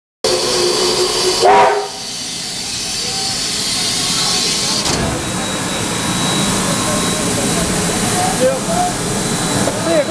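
NZR Wab-class steam locomotive: a short blast on the whistle that sags in pitch as it shuts off, then a steady hiss of steam.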